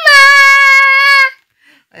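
A child's voice singing the last word of a short song as one long, loud, high held note that stops after just over a second.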